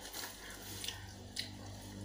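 Quiet eating sounds: faint chewing with a few soft mouth clicks, over a low steady hum.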